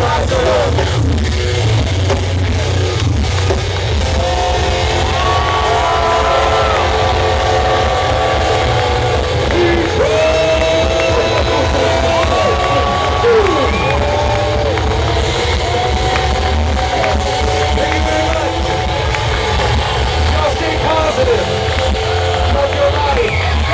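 Rock band playing live through an outdoor PA, heard from the crowd: heavy bass and drums under long held notes that bend in pitch.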